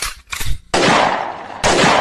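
Two gunshot sound effects about a second apart, the first fading away slowly after the crack.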